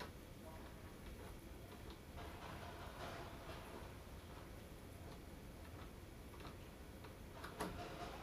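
Faint, irregular clicks and small metal taps from a tubular lever lockset being fitted to a door by hand, with one sharper click near the end.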